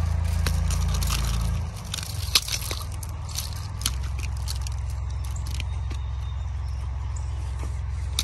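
Faint scraping and clicking of nylon trimmer line being pulled off a string-trimmer spool and handled over gravel, over a steady low rumble that is stronger for the first second and a half.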